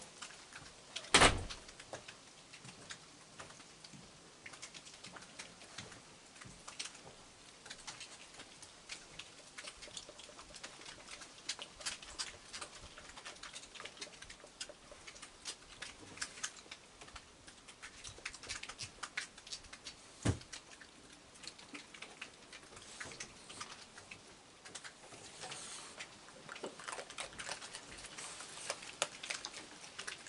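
Raccoons eating dry kibble off a wooden deck: a steady scatter of faint crunches and clicks. A loud thump comes about a second in, and a smaller knock later on.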